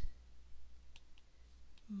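A few faint, sharp clicks, about a second in, of a stylus tapping the glass of a tablet screen while handwriting.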